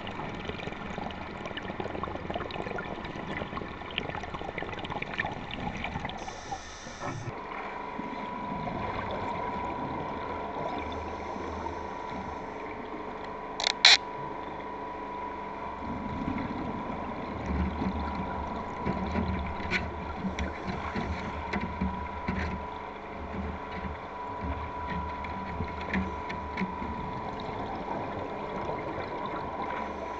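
Underwater water noise with gurgling and bubbling, picked up by a camera under water, with a faint steady high tone from about eight seconds in. A sharp double click about fourteen seconds in is the loudest sound. From about sixteen seconds on come low, uneven bursts of bubbling from a diver's exhaled air close by.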